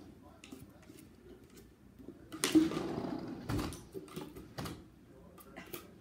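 A small dog nosing at a tennis ball can and its balls: a noisy scuffling rattle about two and a half seconds in, a dull knock a second later, and a few light clicks near the end.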